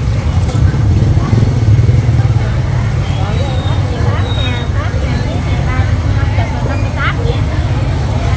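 Busy market ambience: a steady low rumble under indistinct voices of people talking, the voices clearer in the second half.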